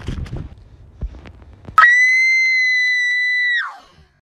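Irregular rustling and crackling, then about two seconds in a sudden, loud, shrill high tone that holds one steady pitch for almost two seconds before sliding down and fading out.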